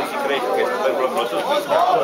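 Several people talking at once, their voices overlapping in close, continuous chatter.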